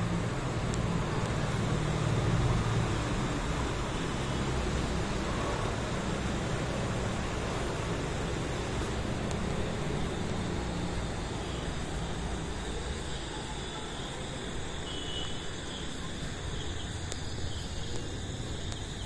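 Steady outdoor night background: a low rumble like distant traffic, louder in the first few seconds, with faint cricket chirping coming in during the second half.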